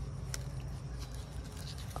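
Faint rustling of persimmon leaves and stem, with a small click about a third of a second in, as a hand twists a fruit on the branch to pick it, over a steady low hum.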